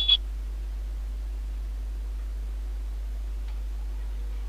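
Steady low electrical hum with faint room tone, after a brief hiss at the very start.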